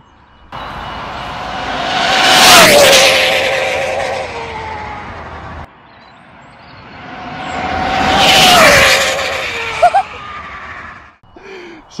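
Arrma Infraction-based speed-run RC car passing at high speed. Its brushless electric motor whine and rushing noise swell to a peak and drop in pitch as it goes by. This is heard twice, the second pass coming after a sudden cut about halfway through.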